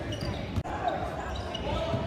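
Basketball game sound in a large gym: a ball bouncing on the hardwood floor, with players' and spectators' voices echoing in the hall. The audio drops out for a split second about half a second in.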